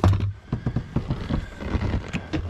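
Hinged livewell lid on a bass boat being opened and handled: a loud knock at the very start, then a run of irregular light clicks and taps.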